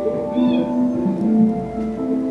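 Music of held, overlapping tones that shift in pitch, with a short high wavering glide about half a second in.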